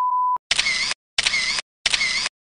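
A steady single-pitch test-tone beep, the kind played with TV colour bars, cutting off about a third of a second in. It is followed by three identical camera-shutter sound effects about two-thirds of a second apart.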